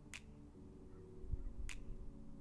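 Two short, sharp clicks about a second and a half apart, over a faint, steady low hum.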